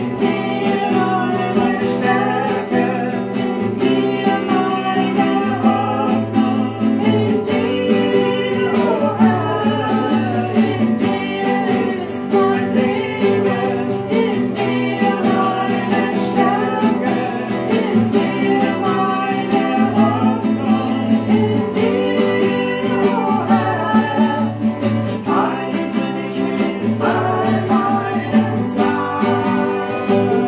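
Voices singing a worship song to a strummed acoustic guitar.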